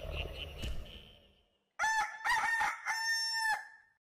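A rooster crowing once, a full cock-a-doodle-doo ending in a long held note, about two seconds in. Before it, a rapid pulsing chirping fades out during the first second and a half.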